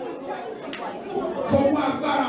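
Speech only: a man preaching into a handheld microphone in a large hall.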